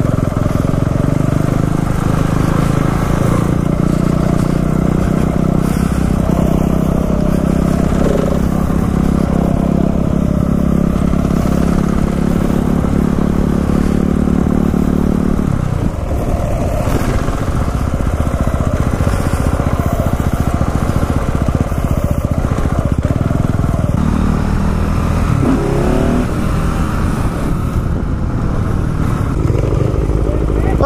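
Single-cylinder engine of a KTM 690 Enduro R dirt bike heard from the rider's helmet camera while riding a dirt track. It runs at a steady throttle for about the first half, drops off suddenly about halfway through, and then rises and falls with the throttle.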